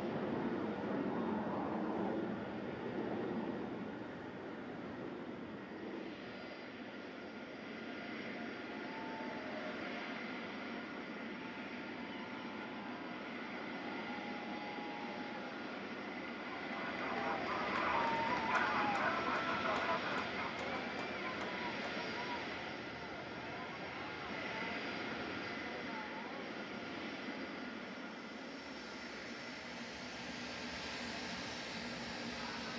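Boeing 747 Shuttle Carrier Aircraft's four jet engines running at taxi power: a steady engine whine over rushing noise. Onlookers' voices rise over it about halfway through, for a few seconds.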